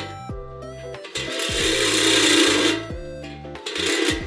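Background music with stepped synth-like notes, over a handheld power grinder working the steel motorcycle frame; the grinding is loudest from about a second in until near the end.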